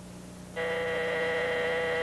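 Electric door buzzer sounding one long, steady buzz that starts about half a second in, announcing someone at the door.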